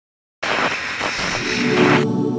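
Channel-intro sound effect: a loud burst of hiss-like static that starts about half a second in, with a musical chord swelling underneath. The static cuts off suddenly at the end, leaving the chord ringing.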